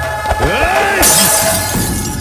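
A drinking glass smashing about a second in, a sudden burst of breaking glass lasting under a second, over dramatic film music.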